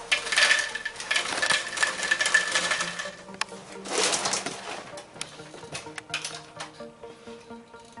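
Berry Vanilla Puffs corn cereal poured from the box into a bowl: a dense rattle of puffs hitting the bowl for about three seconds, a second short pour about four seconds in, then scattered ticks of the last pieces settling.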